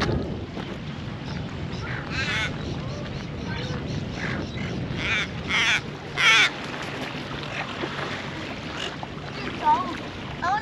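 A flock of silver gulls squawking: a few harsh calls about two seconds in, then a cluster of louder ones between five and six and a half seconds, over a low steady background hum.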